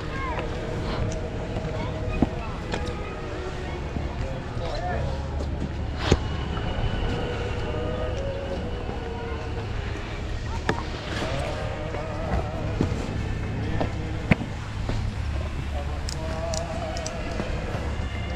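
Low steady rumble with faint distant voices rising and falling at times, and a few sharp knocks.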